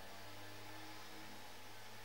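Room tone: a faint, steady low hum with an even background hiss.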